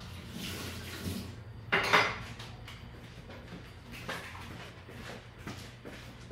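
Dishes and utensils being handled in a home kitchen, with one louder clatter about two seconds in and scattered light knocks after it.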